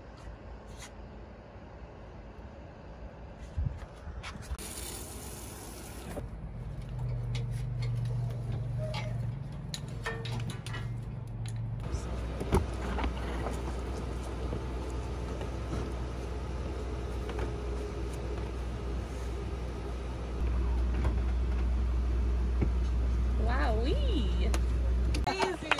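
Fleetwood Bounder motorhome's slide-out room moving out under its electric motor: a steady low hum from about halfway in that grows louder for the last few seconds.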